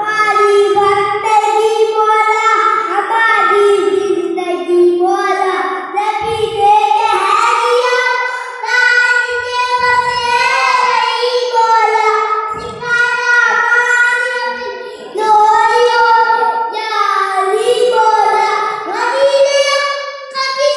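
A young boy singing a devotional poem solo and unaccompanied into a microphone, in high, long-held notes and phrase after phrase.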